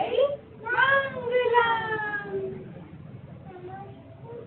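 A young girl's high voice singing a prayer: a short phrase, then one long note held for about a second and a half that slowly falls in pitch.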